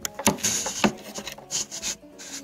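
Close-up handling noise: small plastic toys being rubbed and knocked together near the microphone, with several sharp clicks and short scraping rubs.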